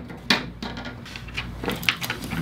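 An electrician's wire snake (fish tape) being pulled out through a hole cut in drywall, rubbing and clicking against the edges of the hole in a few short, irregular scrapes.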